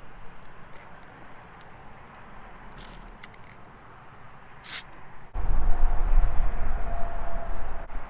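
Two short hisses of a PB Blaster aerosol can spraying penetrating oil through its straw, the second one louder, over a quiet background. About five seconds in, the sound switches suddenly to loud wind buffeting on the microphone.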